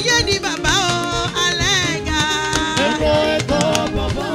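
Live band music: a woman singing, her voice gliding and bending between notes, over steady drums and percussion.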